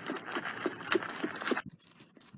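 Dry grass rustling and crunching as a plastic model horse is moved through it at a trot, with light taps about three a second that stop a little over one and a half seconds in.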